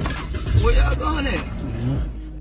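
Muffled, distorted voices from a phone livestream over background music, with a steady low rumble underneath.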